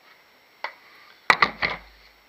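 A faint click, then a quick cluster of three or four hard knocks with a dull thud, about a second and a half in: a plastic knife box being moved and set down on a wooden workbench.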